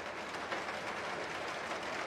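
Steady, even background noise, like outdoor ambience or hiss, with no distinct event in it.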